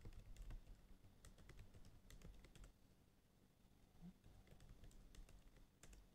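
Faint computer-keyboard typing in quick runs of keystrokes, thinning out for a second or two past the middle before picking up again near the end.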